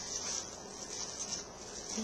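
Steady high-pitched insect chirring in the background, a continuous trill that pulses slightly.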